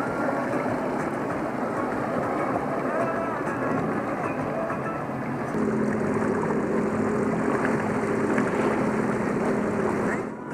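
2018 Sea-Doo GTX Limited personal watercraft underway, its engine running with the rush of water and air over the hull. About halfway through the engine settles into a steady, even-pitched hum.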